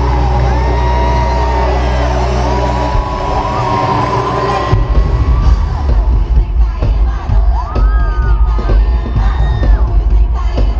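Arena crowd screaming and cheering over a held low synth drone of a live pop show. About five seconds in, a pounding bass beat starts.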